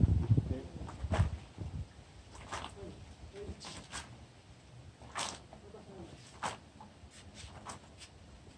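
Water flicked by hand from a bucket, splashing onto a banana leaf and the paving in a string of short separate splashes about once a second, after a few low knocks near the start.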